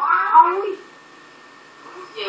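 A short, high vocal call gliding up and down in pitch in the first moment, followed by a quiet stretch of about a second.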